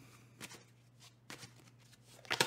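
Faint handling of a deck of cards being drawn from: a few soft card clicks and slides, near silence in between.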